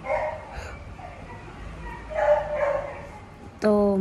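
A dog making short, soft vocal sounds twice, once at the start and again about two seconds in. The dog is unwell after a bite from another dog and an injection.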